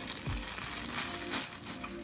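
Clear plastic packaging bag crinkling as it is handled and a spool of sewing thread is pulled out of it.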